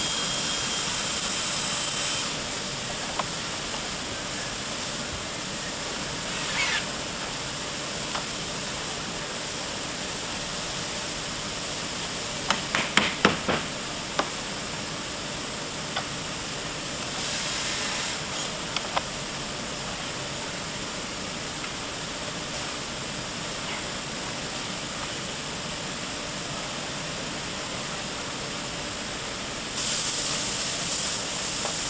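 Steady hiss of a furniture factory floor, with a hand-held power tool running briefly at the start with a thin whine. About 12 seconds in comes a quick run of about six sharp knocks, and a few single clicks are scattered through the rest.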